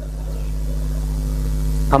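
A steady low hum with several even overtones, slowly swelling in loudness, heard in a pause in speech; the same hum runs under the talk on either side.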